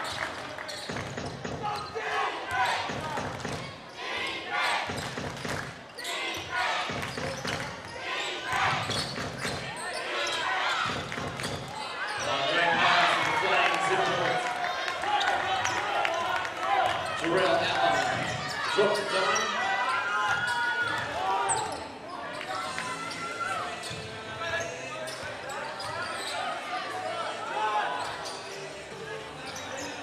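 A basketball bouncing repeatedly on a hardwood gym floor during play, with players' and spectators' voices calling out and echoing in the hall.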